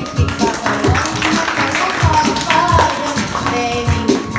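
Instrumental music of a pop song intro, with a steady beat of low thumps and a melody gliding above it.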